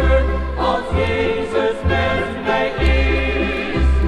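A choir singing a Dutch gospel hymn with instrumental accompaniment, over a bass line that changes note about once a second.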